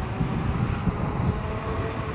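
Kukirin G3 Pro dual-motor electric scooter riding along: a steady low rumble of wind on the microphone and tyre noise on the road, with a faint steady whine from the motors.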